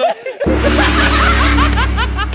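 A group of men laughing over background music that cuts in about half a second in, with short high squeals of laughter.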